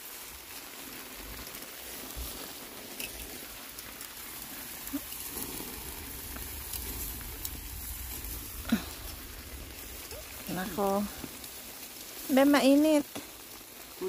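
Steady patter of light rain falling around a campsite, with scattered small drip ticks. Near the end a person's voice hums briefly twice, the second time louder.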